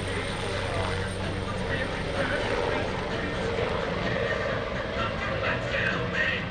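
Twin-turbine AgustaWestland AW139 helicopter in flight: a steady hum of its five-blade main rotor and turbine engines.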